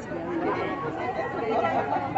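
Chatter of several people talking over one another, with no single voice standing out.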